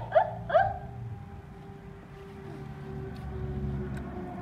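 A baby giving two short, high-pitched whimpering cries within the first second, then only a faint steady hum.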